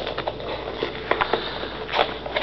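Crackling, rustling and small taps of a mailed package being worked open by hand, coming irregularly.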